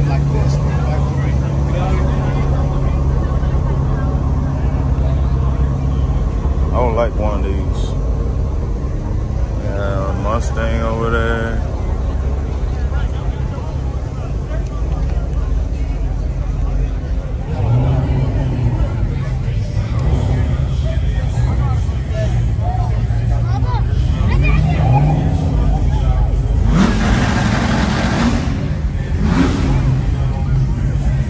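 Car engines running in a crowded lot, with people talking nearby. A steady low engine hum fills the first few seconds, a few rising revs come later, and there is a louder rush of noise near the end.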